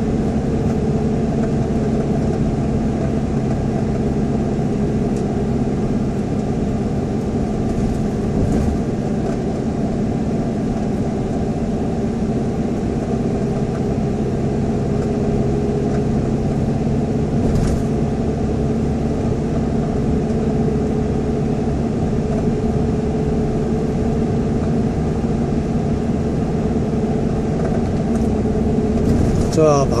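Steady road and engine noise of a car cruising at an even speed, heard inside the cabin: a constant hum, with a couple of faint brief knocks from the road.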